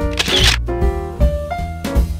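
Jazzy background music with piano, bass and drums. About a quarter second in, a short noisy burst cuts across it, like a camera-shutter sound effect.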